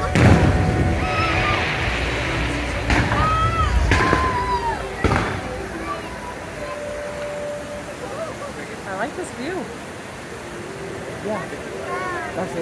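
Fireworks going off in sharp bangs, about four in the first five seconds, the first and loudest right at the start. They sound over a show soundtrack of music and voices.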